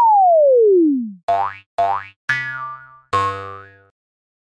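Cartoon sound effects: a click and a boing that slides down in pitch for about a second, then four short bouncy tones, the first two rising quickly and the last two held longer and fading.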